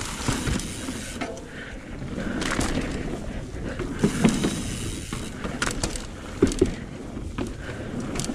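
Mountain bike rolling over a wooden plank boardwalk, its tyres clattering irregularly across the slats, with a rushing noise of riding and loose brake cables rattling on the bike.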